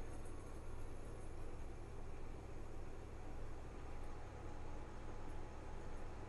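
Faint, steady hum and hiss of a caravan air conditioner and an induction cooker running together on power boil, a heavy combined load of about 3,350 watts on the inverter.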